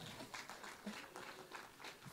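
Faint, scattered light clapping from a few people in the congregation, a quick irregular patter of hand claps.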